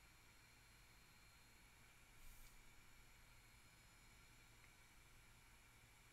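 Near silence: room tone of faint steady hiss and low hum, with one brief faint noise about two seconds in.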